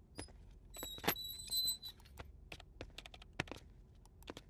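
Typing on a computer keyboard: quick, irregular key clicks. About a second in comes a brief, high electronic tone from the computer.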